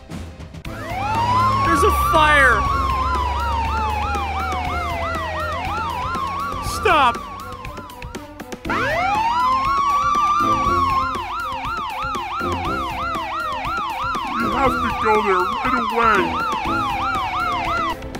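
Police car siren: a slow wail that climbs quickly and sinks over about three seconds, layered with a fast warbling yelp. It breaks off briefly about eight and a half seconds in and starts again, over quiet background music.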